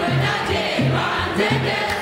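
Young Ethiopian Orthodox choir singing a hymn together, with a steady low beat about every half second.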